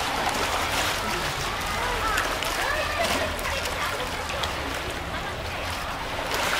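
Pool water splashing and sloshing as a hippopotamus and her calf play in it, with distant voices of onlookers underneath.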